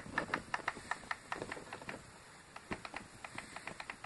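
Tablet volume-down button clicked over and over in quick succession, in two fast runs with a short lull around the middle, scrolling down the recovery-mode menu.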